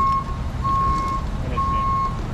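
An electronic beeper repeating one steady mid-pitched tone, about one beep a second, each about half a second long, over a low rumble.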